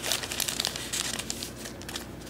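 Clear plastic bag crinkling and crackling in irregular bursts as a bundle of prop banknotes inside it is handled and a note is pulled out. The crackling thins out toward the end.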